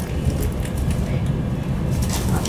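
Steady low rumble of a passenger train running, heard from inside the carriage, with faint conversation in the background.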